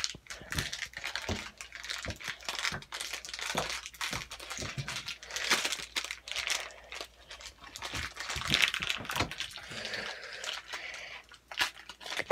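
Foil pouch of Model Magic clay crinkling and crackling irregularly as it is twisted and pulled by hand in an effort to tear it open.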